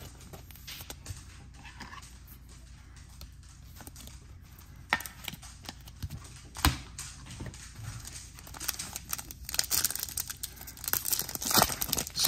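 Trading cards being handled: a clear plastic card sleeve rustling, then a foil card-pack wrapper crinkling and tearing as it is opened. Scattered sharp clicks come first, and the crinkling grows denser over the last few seconds.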